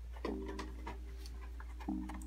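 A long, steady hesitation hum from a man's voice, held for over a second, with a second short one near the end. A few faint clicks from handling a cardboard toy box run under it.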